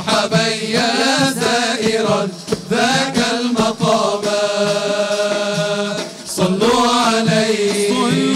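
A group of men singing a Sufi devotional nasheed together, a long, ornamented melodic line with short breaks about two and six seconds in.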